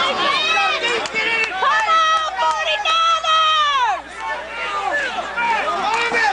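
Spectators at a football game shouting and cheering during a play, several high-pitched voices overlapping, with long drawn-out yells about two to four seconds in.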